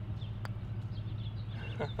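A single sharp click of a putter striking a mini golf ball about half a second in, over a steady low hum and faint bird chirps. A laugh starts near the end.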